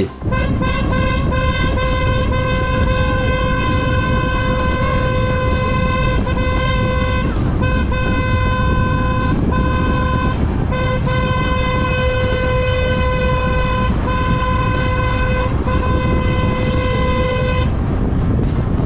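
Car horn held down almost continuously in one steady, single-pitched blare, broken by a few brief gaps, over engine and wind rumble. It is honking at a slow car ahead to make it speed up and clear the road.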